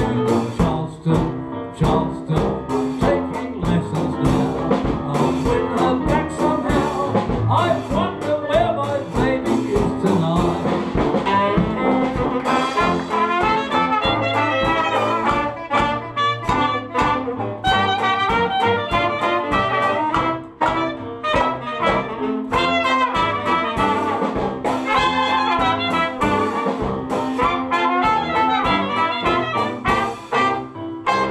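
Traditional jazz band playing a Charleston live, with trumpet and clarinet leading over saxophone, sousaphone and drums, on a steady, even beat.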